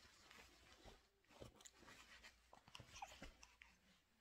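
Near silence: faint, irregular rustling and small clicks, with a brief soft squeak about three seconds in.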